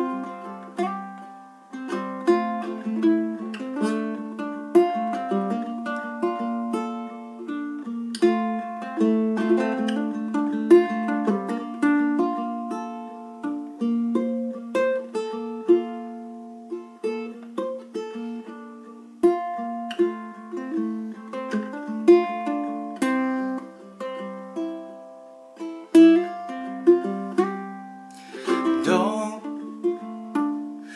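Moore Bettah tenor ukulele with a spruce top and macassar ebony back and sides, played solo: an instrumental passage of plucked melody notes over chords, each note ringing briefly and dying away.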